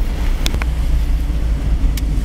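Car driving along: steady low road and engine rumble heard from inside the cabin, with two short clicks, one about half a second in and one near the end.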